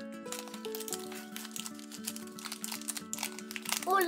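Crinkly plastic wrapper of a toy blind bag crinkling as it is pulled and torn open by hand, with many short crackles over steady background music.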